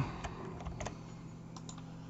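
A few scattered computer keyboard and mouse clicks, faint and irregular, as keys such as Ctrl+C are pressed, over a faint steady low hum.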